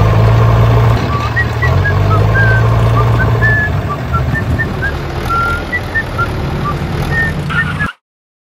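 Tractor engine running steadily, loudest over the first three and a half seconds and then lower, with short high chirps scattered throughout. The sound cuts off suddenly just before the end.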